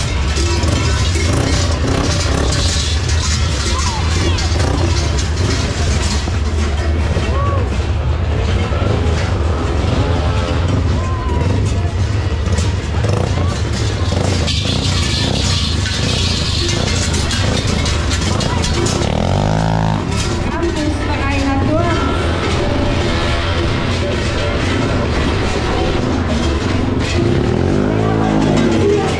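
A quad bike's engine running amid loud crowd voices and music.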